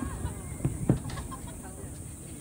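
Two thuds of distant firework shells bursting, the second about a quarter second after the first, with people's voices chattering in the background.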